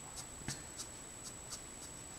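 Letraset Promarker alcohol-marker nib flicked across cardstock in short colouring strokes. It gives faint, light scratchy ticks, about three a second.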